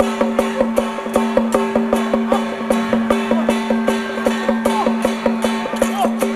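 Traditional percussion band playing a fast, even beat of about three to four strokes a second over a steady held ringing tone, the accompaniment to a Song Jiang array martial performance.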